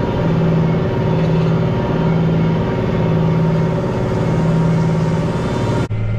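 Tractor engine running steadily while pulling an eight-bottom plow through the field, heard from out by the plow with the rush of the working ground. The tractor is under only a moderate load with this plow.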